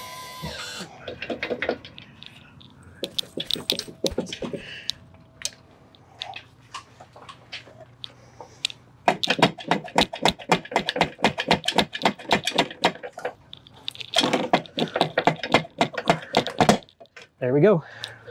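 Metal clicking and clattering as the corroded lower unit of a Honda outboard is worked down off the motor: scattered clicks at first, then two spells of rapid, regular clicking, about seven a second, in the second half.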